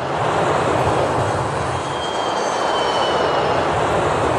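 Four-engine jet airliner's engines running as it comes in to land: a loud, steady rush of noise with a faint high turbine whine that drifts slightly downward in pitch.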